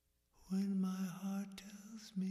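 A lone voice singing slowly and unaccompanied. It comes in about half a second in and holds long, drawn-out notes.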